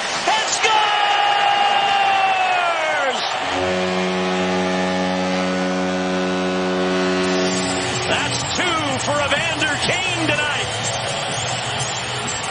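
Arena goal horn after a San Jose Sharks goal: a steady low horn with strong overtones held for about four seconds, preceded by a high tone that slides down in pitch and stops.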